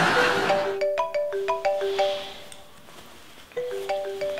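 Mobile phone ringing with a marimba-style ringtone: a short melody of tinkling mallet notes, a pause of about a second, then the melody starting over.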